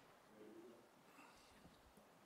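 Near silence: room tone, with a faint, indistinct murmur about half a second in.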